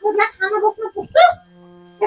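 Short spoken phrases for just over a second, then soft background music with a held low tone comes in.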